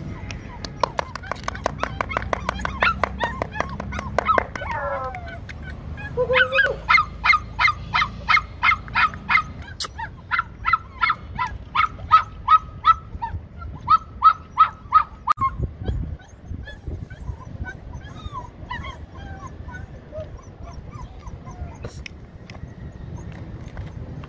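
Puppy yipping: a quick run of short high-pitched yips, then a long, evenly spaced series of yips about two or three a second that stops a little past the middle.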